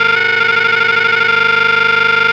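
A cartoon voice sample frozen by audio editing into a loud, steady, distorted drone that holds one pitch with many overtones.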